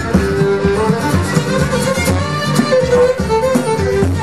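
Instrumental break in a live folk song: a fiddle plays the melody over a plucked-string accompaniment.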